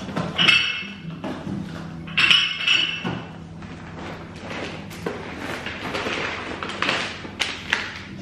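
Rustling and crinkling of a shopping bag and food packaging as groceries are rummaged through, with a few knocks. Two louder crinkly bursts come in the first three seconds, then softer rustling.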